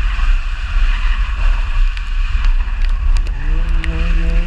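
Wind buffeting a microphone mounted on the outside of a moving car, a heavy rumble with road and tyre hiss. Near the end the car's engine note rises as it revs up.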